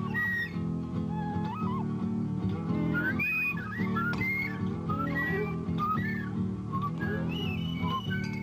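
A wooden flute plays a melody with slides between notes, over a steady low instrumental accompaniment.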